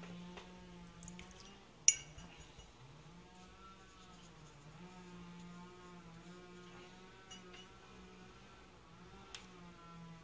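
A faint steady hum throughout, broken by one sharp, light clink about two seconds in and a softer click near the end.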